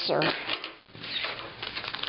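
A bundle of paper booklets in plastic wrapping rustling and crinkling as it is pulled open by hand, with a brief lull just before the middle.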